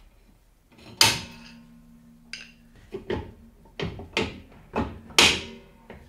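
Metal parts and tools knocked and set down during rear wheel bearing work on a drum brake: about seven sharp metallic knocks at uneven intervals, the loudest about a second in and near the end, a couple leaving a brief low ringing.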